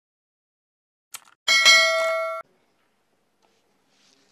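A short click, then a bell-like notification ding about a second long that cuts off abruptly: the sound effect of a subscribe-button animation.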